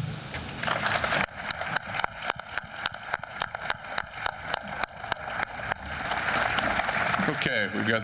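Press camera shutters clicking in quick succession, about four or five sharp clicks a second, for several seconds, over a murmur of voices in the room.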